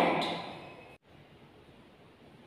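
The end of a woman's spoken word, its pitch falling, dying away over the first second; then an abrupt cut to faint steady room hiss.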